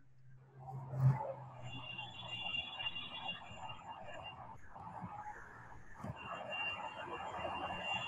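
Faint background noise picked up through the video call's audio, with a low steady hum over the first couple of seconds and a single click about a second in.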